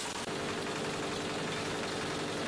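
Motor of a compost-processing machine running with a steady hum, a few constant tones over a noisy background.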